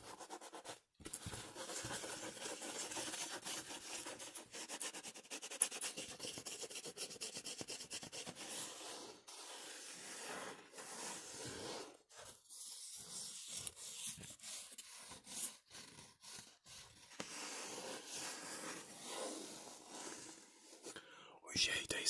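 Fingers and nails scratching and rubbing a cardboard plaque held close to the microphone, in dense runs of scratchy strokes, very rapid in the first couple of seconds and broken by brief pauses.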